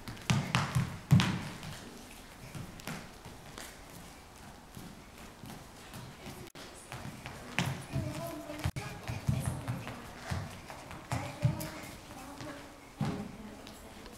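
Soft, irregular thuds and patters of a small child's ballet-slippered feet on a studio dance floor as she skips, hops and lands, in clusters near the start, in the middle and near the end.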